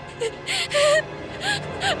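A young girl gasping and whimpering in fright: about four sharp, ragged breaths broken by short crying sounds, over background music.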